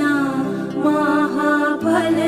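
Background music: a solo voice sings a slow, chant-like melody with a wavering pitch over a steady low drone.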